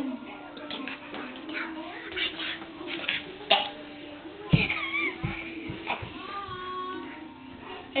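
A child's high, wavering, meow-like cries in cat-like play, with a few thumps about halfway through.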